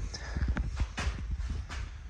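A run of irregular light knocks and clicks over a low rumble.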